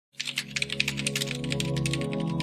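Rapid computer-keyboard typing clicks, about eight to ten keystrokes a second, over a low, sustained music drone; both start a fraction of a second in.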